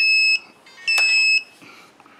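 An electronic beeper sounding a steady high-pitched beep twice, each about half a second long and about a second apart, as part of a repeating pattern from the just-powered racing quad setup.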